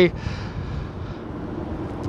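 Steady low rumble of distant traffic, with a faint low hum under it.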